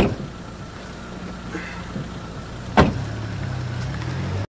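A steady low hum like a running motor vehicle, broken by two sharp thumps: one at the start and one nearly three seconds later.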